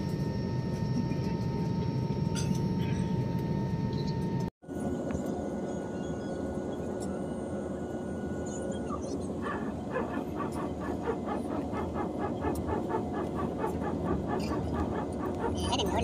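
Jet airliner cabin noise while taxiing, heard from a window seat: a steady engine rumble with several held whining tones. After a brief break about four and a half seconds in, the drone goes on, and a fast, even pulsing joins it in the second half.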